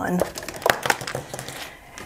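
Crinkling and crackling from something being handled on the table: a quick, irregular run of small clicks lasting about a second and a half.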